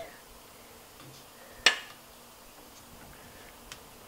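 One sharp click about halfway through, then a faint tick near the end, as a SawStop dado brake cartridge is pushed into its mount inside the table saw.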